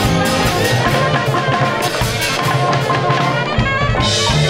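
Small jazz band playing live: a saxophone holds long notes over a walking upright bass, with drum kit and cymbals keeping time.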